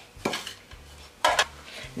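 Two brief clatters of kitchenware being handled, a plastic cup and utensils knocking against a glass bowl or the counter, one about a quarter second in and a louder one just past the middle.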